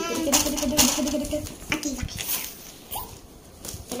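A young girl's voice held on a drawn-out sound, then fading, over short scrapes and knocks of hands and a tool on a cardboard parcel.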